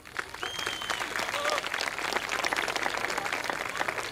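Audience applauding, the clapping building up about half a second in and then holding steady, with a short high whistle near the start.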